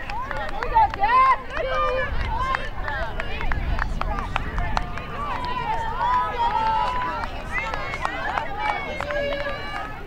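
Many overlapping voices of players and spectators shouting and calling out across a lacrosse field, with a few sharp clicks scattered among them.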